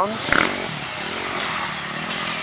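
Off-road enduro motorcycle engine heard as the bike comes along the dirt course, its revs rising and falling. A short thump comes about a third of a second in.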